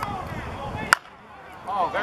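A softball bat hits a pitched ball once, about a second in, with a single sharp crack.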